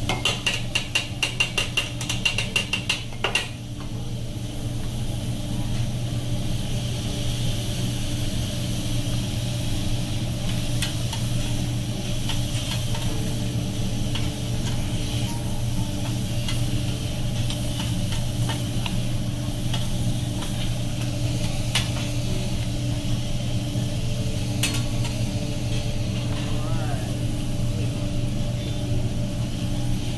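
Metal spatulas clacking rapidly against a steel teppanyaki griddle for the first three or four seconds as diced steak is chopped and tossed. After that, food sizzles steadily on the hot griddle, with a few scattered spatula taps and a steady low hum underneath.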